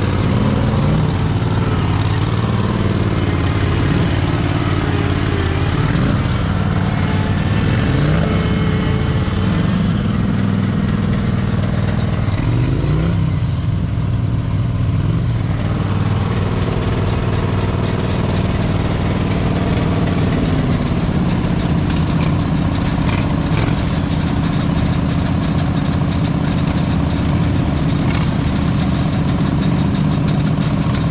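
Off-road riding lawn tractor engines running under load on a rocky climb, revving up and down repeatedly through about the first half, then running at a steadier speed.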